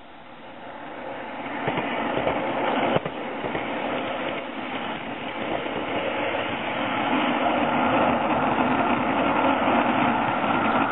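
Garden-scale live-steam train running on its track, pulled by an LGB/Aster Frank S locomotive and heard from one of its cars: a steady rolling rattle of wheels on rail, with a few light clicks. It builds over the first few seconds and then holds.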